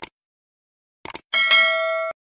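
Subscribe-button sound effect: a click at the start and two quick mouse clicks about a second in, then a bell chime ringing steadily for most of a second.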